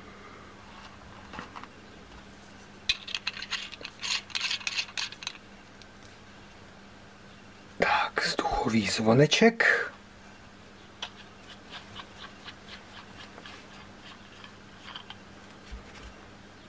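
Small stainless-steel atomizer parts being handled and screwed together: a cluster of light metallic clicks and scrapes about three to five seconds in, and fainter ticks later on.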